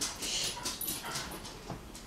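A pet dog close by, snuffling and breathing in a run of short noisy bursts that fade after about a second.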